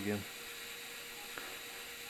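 Faint steady hum with a thin sustained tone: the GE AC4400 diesel sound file running at a low volume through the small speaker of an N-scale sound car.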